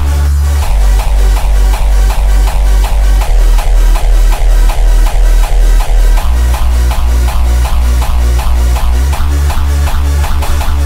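Electronic dance music with a fast, steady kick-drum beat and heavy bass.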